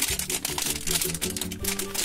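Foil blind-bag packet crackling and crinkling as it is pulled apart into two halves, in quick irregular clicks, over steady background music.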